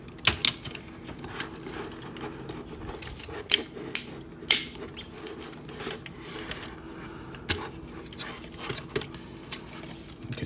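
Hard plastic parts of a transforming robot action figure clicking as they are handled: about six sharp clicks, two near the start, three close together around the middle and one later, with softer rustling between. A shell panel that is not lined up is being worked onto its tabs.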